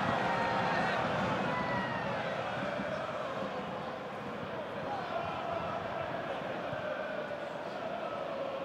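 Football stadium crowd: a steady noise of many voices from the stands, with no single event standing out.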